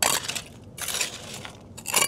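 A few short crunching, scraping noises, like stones and gravel of a shingle foreshore shifting under someone crouched on it: one right at the start, one about a second in and one near the end.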